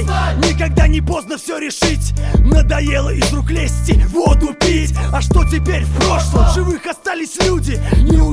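Russian-language hip-hop track: rapping over a beat with a heavy sustained bass line and kick drum. The bass drops out briefly twice, a little over a second in and near the end.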